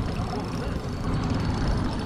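Spinning reel being wound in under the load of a hooked fish, over a steady low rumble with a faint, even high whine.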